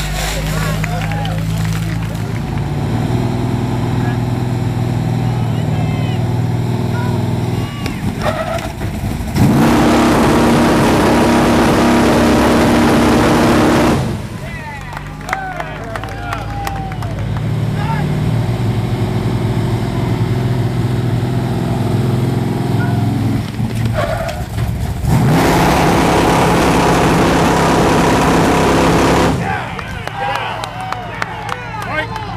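A steady engine hum, like a fire pump motor running, twice swells into a loud rushing hiss of high-pressure water spray that lasts about four to five seconds each time. Crowd voices sit faintly on top.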